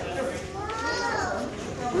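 Voices of visitors chattering, with a child's voice in one drawn-out call that rises and falls in pitch.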